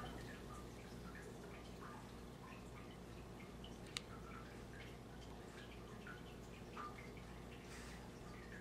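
Quiet, steady low hum with faint scattered ticks and one sharp click about four seconds in, from a scalpel being handled against a metal dissection pan.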